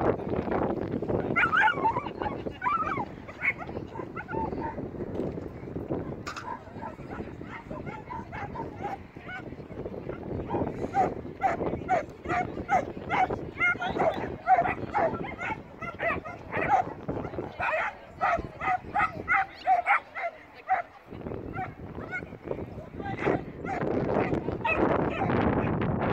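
A dog barking in a long, rapid series of high yaps, about three a second, through the middle of the stretch, with whining calls in the first few seconds.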